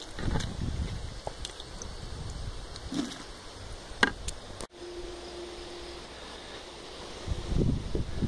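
Low rumble of wind buffeting the microphone, with a couple of faint clicks about four seconds in and a brief dropout just before five seconds.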